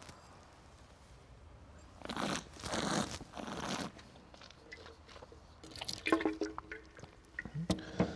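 A wine taster slurping a sip of white wine, drawing air through it in the mouth, in two noisy drafts about two seconds in. Fainter mouth sounds and a click follow later.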